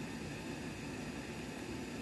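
Steady background hiss with a low rumble underneath: room noise with no music playing.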